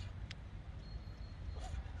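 Quiet outdoor background: a steady low rumble with one faint click about a third of a second in.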